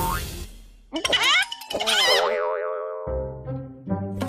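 Cartoon sound effects over background music: a sharp hit right at the start, then from about a second in a burst of warbling, quavering tones that slide downward and settle into steady held notes near the end.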